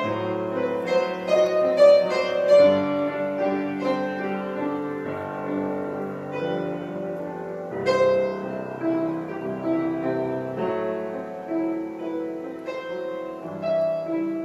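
Background piano music: a slow piece of struck notes and chords left to ring, with new notes coming every second or so.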